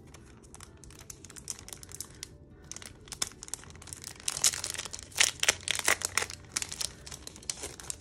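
Crinkling and rustling of a clear plastic sleeve and paper cards being opened and handled, a rapid run of crackles that is busiest and loudest a little past the middle.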